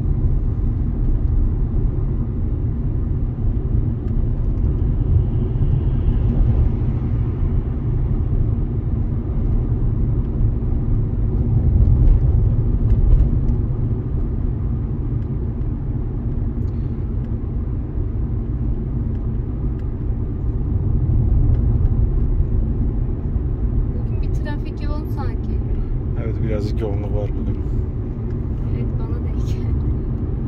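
Engine and road noise inside the cabin of a Dacia car cruising steadily in third gear at about 40–50 km/h: a steady low rumble that swells slightly a little before the middle.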